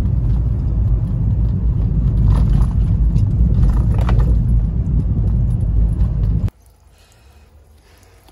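Road and engine rumble inside a moving car, a heavy low rumble with a couple of light rattles. It cuts off suddenly about six and a half seconds in, leaving a much quieter background.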